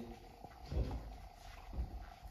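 A pause in a man's talk over a handheld microphone: a low rumble, with one short spoken word ("God") under a second in.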